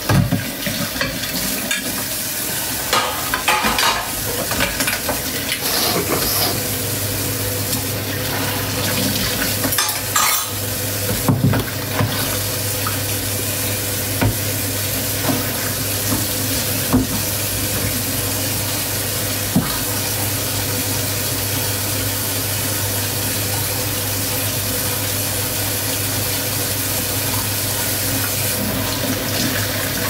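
Kitchen tap running into a stainless-steel sink while dishes are washed. Dishes and cutlery clink and clatter through the first dozen seconds, then the water runs on as a steady rush.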